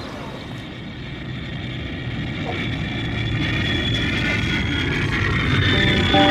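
Street traffic noise giving way to a jet airliner taking off: a low engine rumble and a high engine whine grow steadily louder through the second half.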